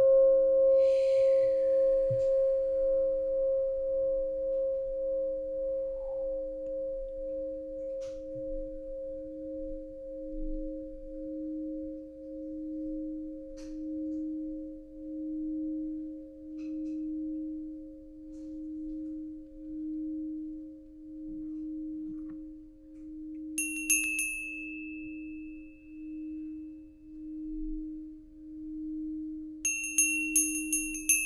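Two alchemy crystal singing bowls sing together in two steady low tones that pulse and slowly fade. About three-quarters of the way through, a small brass hand bell rings once with a bright high tone that dies away over a few seconds, and it starts ringing again at the very end.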